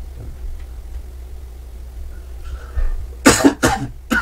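A man coughing: a quick run of three short, loud coughs about three seconds in.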